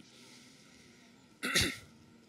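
A single short cough about one and a half seconds in, in a quiet pause between chanted lines.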